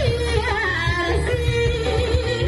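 Live Javanese jaranan music: a gliding, ornamented melody line over steady, dense drumming.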